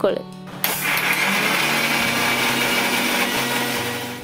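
Electric mixer grinder running at full speed, blending green grapes and sugar in its steel jar. The motor starts about half a second in, runs steadily, and stops near the end.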